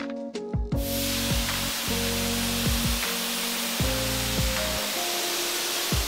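A gravity-feed paint spray gun spraying, a steady even hiss of air and atomised paint that starts about a second in. It is heard under background music with a steady beat.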